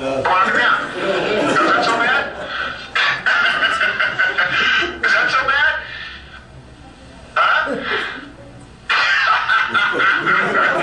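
Voices from a cockpit video played over the room's speakers, hard to make out, cutting in and out abruptly several times.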